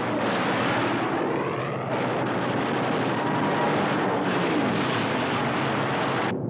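Propeller fighter aircraft engines droning loudly in flight, the pitch dropping twice as planes pass by.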